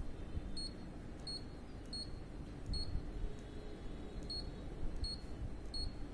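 Canon imageRUNNER 2520 copier's touch-panel key beep: seven short, high beeps, roughly one every three-quarters of a second with a longer pause in the middle. Each beep is one press of the right-arrow key as the settings menu steps forward.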